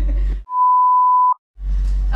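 A censor bleep: one steady, high-pitched beep lasting just under a second, dubbed over the speech with all other sound muted, bleeping out a word. Speech is heard either side of it.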